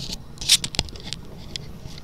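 Handling noise: a click, then a short scrape about half a second in, followed by a few light sharp clicks.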